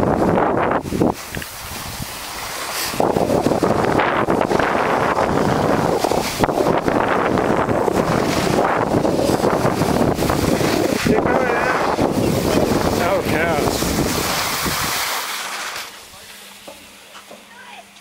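Wind buffeting the microphone and skis scraping over snow during a downhill ski run, loud and steady, dying away about three seconds before the end as the skier slows and stops.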